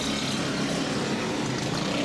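Several go-kart engines running together as a pack of karts races past, a steady drone of small engines at racing speed.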